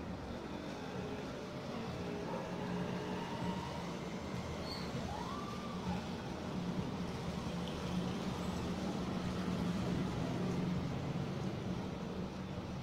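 Electric hair clipper buzzing steadily as it cuts along the hairline, growing a little louder partway through.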